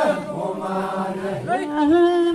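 Traditional group chant in long held notes that glide in pitch. One phrase dies away and the next begins about a second and a half in.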